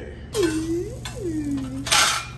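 Metal baking sheet scraping across a wire cooling rack with two squeals, ending in a sharp clank as it settles.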